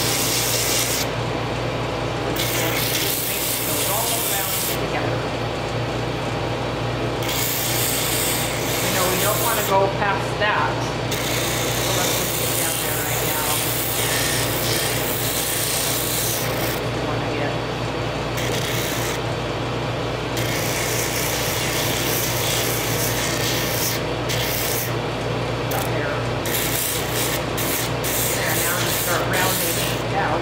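Pneumatic drum sander running with a steady motor hum, while small wooden intarsia pieces are pressed against the sanding sleeve to shape them. The rasping sanding noise comes and goes in spells as each piece touches the drum and is pulled away.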